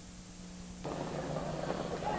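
Recording hiss with a steady low hum, then, a little under a second in, a sudden step up to a noisy wash of crowd and racetrack ambience as the race-call microphone is opened just before the start.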